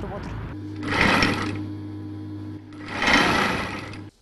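Electric sewing machine running in two short bursts, about a second in and again about three seconds in, with a steady hum between.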